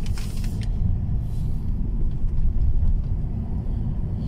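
Steady low rumble of a minibus's engine and road noise heard from inside the cab while driving, with a short hiss right at the start.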